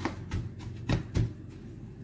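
Hands patting and pressing a chicken cutlet into breadcrumbs in a metal baking tray: about four pats in the first second and a half.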